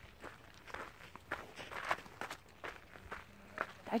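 Footsteps on a loose gravel path, about two steps a second.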